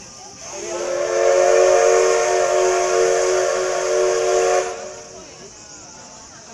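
Steam whistle of the JNR C62 2 steam locomotive, sounding one long blast of about four seconds: several steady tones together over a rush of hissing steam. It starts about half a second in and cuts off sharply before the five-second mark.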